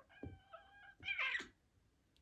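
Cat vocalizing during a play fight: a high, held meow lasting under a second, then a louder, harsher cry about a second in.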